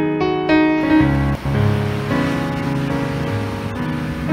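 Slow instrumental piano music playing a melody over held low notes, with the wash of ocean surf rising underneath from about a second and a half in.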